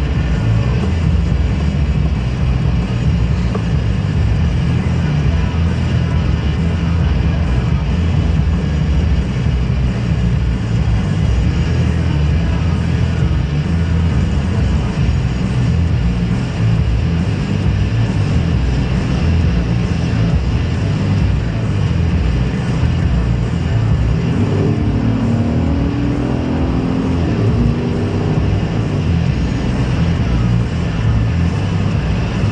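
Car cabin noise while driving: a steady, loud low rumble of engine and tyres on the road.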